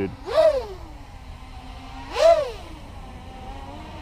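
ImpulseRC Alien 6-inch racing quadcopter's KDE 2050kv brushless motors and props whining up and back down in two throttle blips, one near the start and one about two seconds in, with a steady lower hum between. Each blip's pitch takes a moment to drop back, which fits the owner's complaint that the props are slow to spin down, so the quad is hard to bring down.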